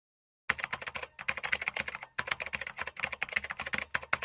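Typing sound effect: rapid computer-keyboard key clicks that start about half a second in, with two brief pauses, as the on-screen text is typed out.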